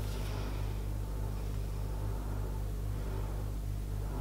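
A steady low hum with a faint hiss above it, even throughout, with no distinct sounds standing out.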